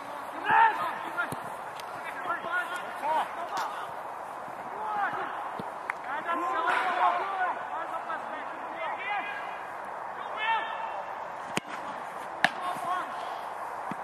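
Voices talking and calling throughout, then near the end two sharp knocks about a second apart: the first is a football being struck for a shot at goal.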